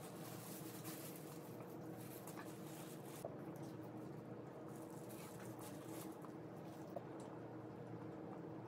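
Faint chewing of crispy air-fried pork, with plastic food gloves rustling and a few small clicks, over a steady low hum.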